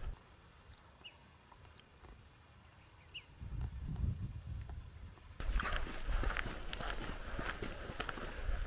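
A hiker's footsteps on a gravelly dirt road. They begin a little over three seconds in as an uneven patter and get louder about five seconds in. Before that it is near silent, with a couple of faint short rising chirps.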